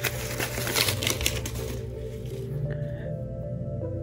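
Crumpled packing paper crinkling and rustling as it is pulled off a small glass dish by hand, dense for the first couple of seconds and then thinning out, over soft background music.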